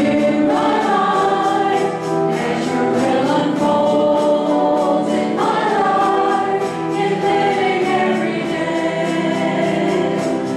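Church praise band performing a worship song: several voices singing together over piano and drums, with a steady beat.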